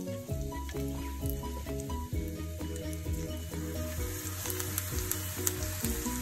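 Sliced garlic sizzling and crackling in hot oil in a frying pan, over background music.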